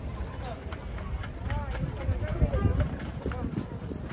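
Footsteps on pavement paving stones, with passers-by talking.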